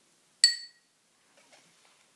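The sun's instrument in a household-object story-music activity, struck once about half a second in: a single bright ringing clink that dies away within a fraction of a second.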